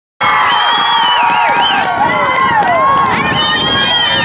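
Spectators cheering and shouting after a soccer goal, many high voices screaming and whooping at once. The sound cuts in suddenly and eases off near the end.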